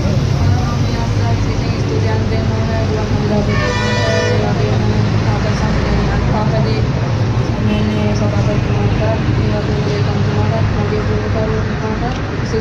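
A vehicle horn sounds once, briefly, about three and a half seconds in, over a steady low traffic rumble.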